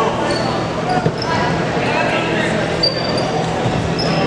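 Basketball play on a hardwood gym court: a ball bouncing and sneakers giving short, high squeaks on the floor, over steady chatter from the crowd in the echoing hall.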